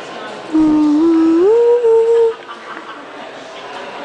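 A person humming three notes that step upward in pitch, the last held, for nearly two seconds, loud against the background murmur of voices in the hall.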